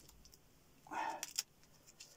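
Brief handling noise from a microphone being adjusted in its stand clip: a short rustle and a few small clicks about a second in, otherwise faint room tone.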